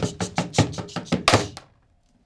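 A rapid run of about a dozen sharp knocks and thuds made by the performers as the staged sound of a taxi crashing into a house. The knocks stop suddenly about a second and a half in.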